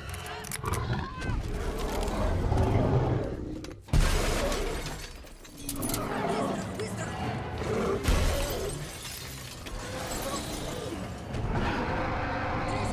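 Film action soundtrack: glass shattering and crashing as a gyrosphere is smashed, with sudden heavy impacts about four and eight seconds in, over dramatic music. A large creature roars near the end.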